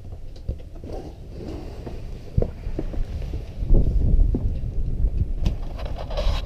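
Footsteps and knocks of someone stepping out of a boat's cabin onto the cockpit deck, over a low, uneven rumble of wind and handling noise on the microphone that grows louder in the last couple of seconds.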